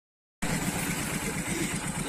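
A vehicle engine idling, a steady low rumble that cuts in abruptly about half a second in.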